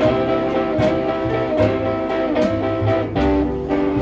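Instrumental stretch of a Chicago blues recording between sung lines, led by guitar over a steady beat.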